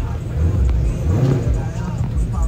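Dodge Challenger doing a burnout: the engine is held at high revs while the rear tyres spin on the asphalt, with voices mixed in.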